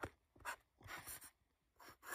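Chisel-tip marker drawing letters on paper: a few short, faint scratchy strokes.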